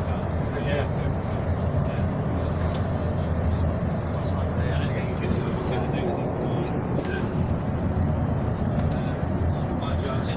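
Steady low rumble of a moving coach heard from inside the cabin, engine and road noise together, with indistinct passenger chatter over it.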